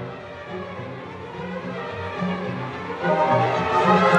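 Symphony orchestra playing live: a loud passage dies away into a quiet stretch of sustained low notes, and about three seconds in the full orchestra swells back in.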